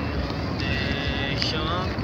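Indistinct voices over a steady low rumble, with a high steady tone lasting about a second in the middle.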